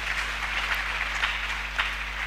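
Applause: people clapping their hands in a steady patter.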